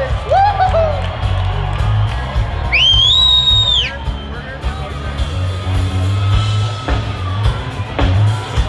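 Electric bass guitar played live through an amplifier, a run of deep, rhythmic notes. About three seconds in, a high whoop rises from the audience and falls away, with shorter cries near the start.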